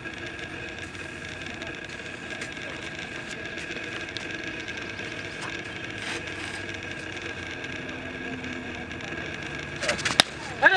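Steady open-air background noise with a faint steady tone and a few faint scattered clicks, then a sharp click right at the end.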